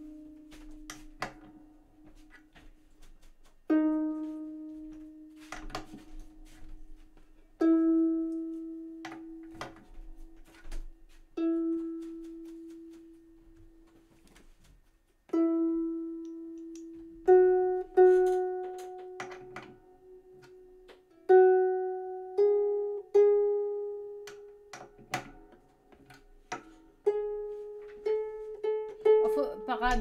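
Celtic harp string plucked one note at a time while it is tightened with a tuning key, each note ringing and dying away, with small clicks between notes. The pitch climbs step by step, the plucks coming faster near the end: the string is being brought up to pitch because it had gone flat.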